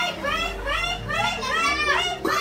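Children's voices calling out, high-pitched, in a run of short rising-and-falling calls that start suddenly.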